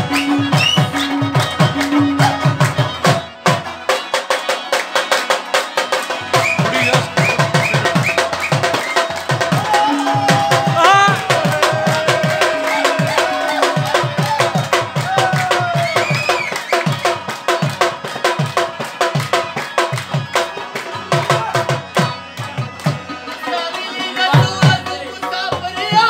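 Live Pashto folk music: harmonium chords over fast, driving hand-drum strokes. The drum drops out for a couple of seconds near the start, then picks up again and carries on.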